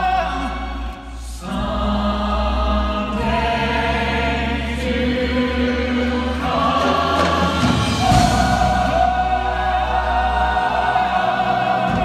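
Choir singing the finale of a stage musical in long held chords that change every second or few, over a sustained low note.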